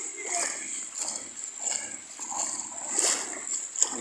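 Footsteps wading through shallow seawater, with uneven splashing and sloshing and one stronger splash about three seconds in.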